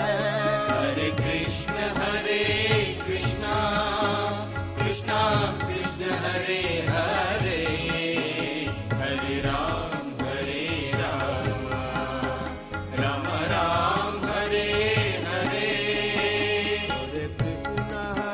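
Devotional chanting sung over music, with a steady low accompaniment and regular sharp percussion strikes.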